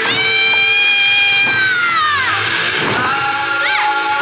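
A high-pitched shouted call from an eisa performer, held for about two seconds, then sliding down in pitch. A short rising-and-falling whoop comes near the end. Underneath are eisa music and drum beats.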